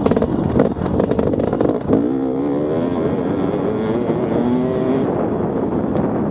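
Dirt bike engine under throttle. There are sharp knocks in the first two seconds, then the engine revs up with a rising, wavering pitch as the bike picks up speed.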